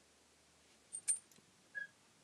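Faint small clicks of glass seed beads and a beading needle being handled: two sharp clicks about a second in, then a brief high tick near the end.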